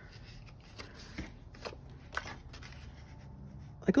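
Sheets of scrapbook paper rustling and sliding against each other as they are handled, with a few soft brushing strokes.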